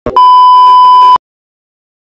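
A single steady, loud electronic beep: the test-pattern tone that goes with TV colour bars. It lasts about a second and cuts off suddenly.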